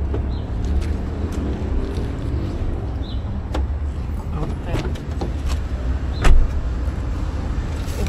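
A car's rear door being opened by its handle: several short clicks from the handle and latch, and a sharp knock about six seconds in, the loudest sound here. A steady low rumble runs underneath.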